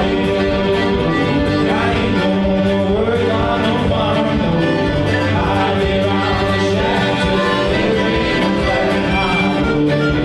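Live bluegrass music from a small acoustic band: fiddle and strummed acoustic guitar playing steadily under singing.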